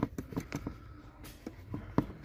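Small irregular clicks and ticks of a cross-head screw being turned by hand with a screwdriver as the new ignition switch contact unit is fastened under the steering column.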